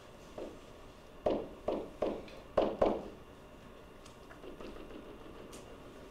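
A pen or stylus tapping against a drawing surface while a dotted line is marked out: five loud, short taps within about a second and a half early on, then fainter ticks.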